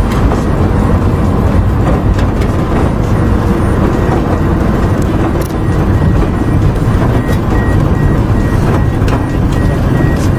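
Loud, steady low rumble of a car in motion heard from inside the cabin, road and engine noise together. A faint high beep begins repeating evenly about seven seconds in.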